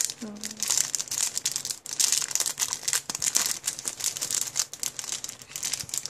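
Clear plastic packaging bag crinkling in the hands as it is opened and a stack of thin wood veneer shapes is pulled out of it: a dense, irregular run of crackles.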